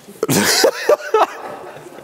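A short, cough-like burst of a man's laughter, followed by a couple of brief vocal sounds.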